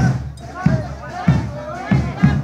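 Procession dance music: a drum beats a steady, repeating rhythm and a pitched melody line rises and falls over it.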